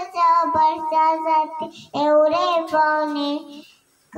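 A small girl singing into a handheld microphone: two held, wavering sung phrases with a brief break near the middle.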